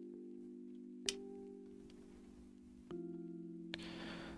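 Quiet background music of held chords that change twice. About a second in, one sharp plastic click, and near the end a smaller click with a brief rustle: a low-profile keyboard switch snapping into its plate.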